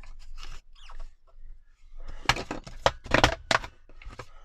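Card rustling against a We R Memory Keepers Word Punch Board, then the lid pressed down, its letter punches cutting through the card in a quick run of about five sharp clicks about two seconds in.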